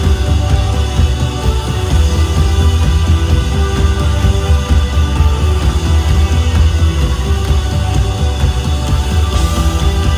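Live rock band playing loud, with electric guitars, keyboards and drums over a heavy, booming bass, recorded from the crowd.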